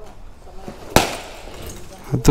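A firecracker lit on the road going off with a single sharp bang about a second in.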